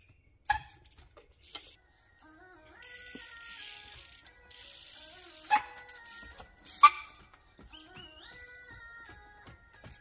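Trials bike hopping on timber beams: sharp knocks of tyres and frame on wood about half a second in, at about five and a half seconds and near seven seconds, the last the loudest. In between, the rear hub's freewheel ratchet buzzes.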